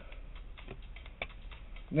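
Light clicks and taps of cardboard trading cards being handled and set down, over a faint steady low hum.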